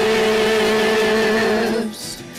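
Hymn singing: the voice holds one long, steady note that breaks off near the end.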